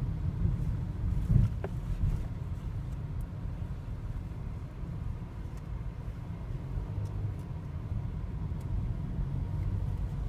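Steady low rumble of a car's engine and tyres heard from inside the cabin while driving slowly through traffic.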